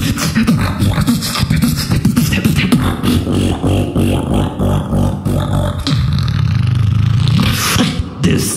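Human beatboxing into a cupped microphone, an electronic-music style beat made entirely with the mouth: fast, dense drum clicks and snares over a deep bass drone, settling into a held bass tone for about the last two seconds.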